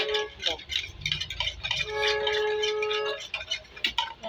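Eggs being beaten with a fork in a bowl: quick, rapid clinking of the fork against the bowl's side. A steady held tone, like a hummed or drawn-out vocal note, sounds over it in the middle for about a second.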